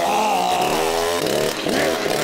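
Chainsaw engine running at high revs, its pitch wavering and changing about a second and a half in.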